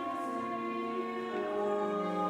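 Church choir singing a slow anthem, holding long chords that change about a third of a second in and again halfway through.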